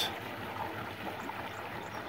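Steady wash of moving water.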